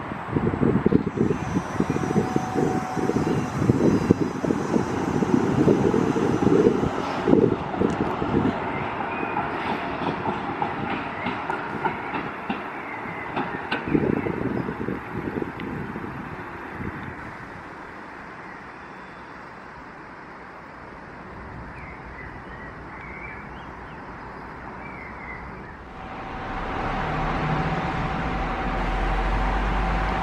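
Düwag N8C tram moving off, its wheels clattering over the rails with a faint high whine from its thyristor drive. It fades into the distance by about halfway through. Near the end a low rumble with a steady tone begins as a Polregio SA138 diesel multiple unit approaches the station.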